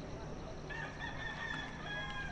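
A rooster crowing once, a long held call that starts under a second in.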